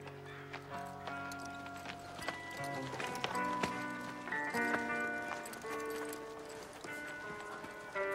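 Slow background music of long held chords that shift every second or so, with a walking horse's hooves clip-clopping irregularly on dirt through it.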